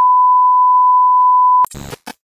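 A loud, steady single-pitch test-tone beep of the kind sounded with TV colour bars, held for about a second and a half, then cut off abruptly. A brief burst of crackling static follows near the end.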